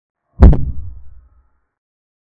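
A single deep thud with a sharp click on top, about half a second in, dying away over about a second: a sound effect added to a chess move animation.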